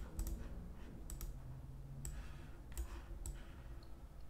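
Computer mouse clicking: several sharp, scattered clicks as an on-screen document is enlarged.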